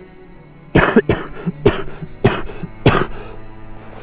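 A person coughing: a series of about six short, sharp coughs starting about a second in, over soft background music.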